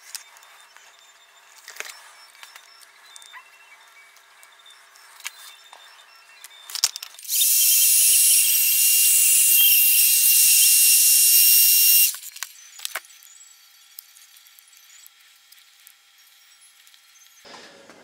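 Handheld heat gun running for about five seconds, a steady high-pitched hiss with a thin whine, while it shrinks heat-shrink tubing over a cable joint; it switches on abruptly and cuts off. Before it, faint small clicks of handling.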